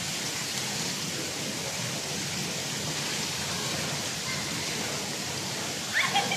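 Steady hiss of water spilling over the pool edge into the slotted overflow gutter, an even rushing with no breaks.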